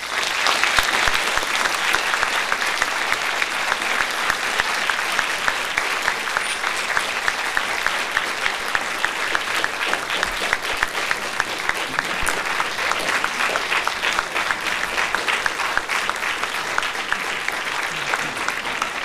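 Audience applauding, a dense steady clapping that starts suddenly and carries on without letting up.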